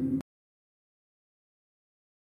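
Complete silence: a woman's narrating voice cuts off in the first moment, and nothing at all is heard after it.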